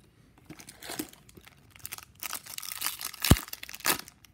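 Crinkling of a foil hockey card pack wrapper as it is handled, thickening in the second half, with one sharp click a little over three seconds in as the loudest sound.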